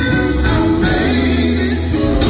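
Live gospel band playing, with a male lead singer over electric bass, guitar, keyboard and drums, amplified through a PA system.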